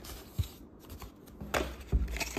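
Hot Wheels cardboard-and-plastic blister card being handled in the fingers: a few short rustles and clicks, the loudest at the very end.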